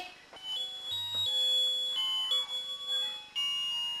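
Electronic tune from a toddler's musical sound book: a thin, beeping melody of held notes stepping up and down in pitch.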